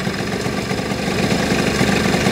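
50cc two-stroke scooter engine running steadily at a raised idle while the air-mixture screw on its carburettor is turned back in a quarter turn. The revs had sagged with the screw backed out: a sign of a mixture that is too lean, with too much air.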